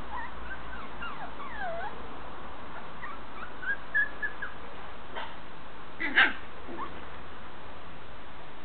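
Shetland sheepdog puppies whining and yipping as they play, a string of short, high, sliding squeaks, with one louder sharp yip about six seconds in.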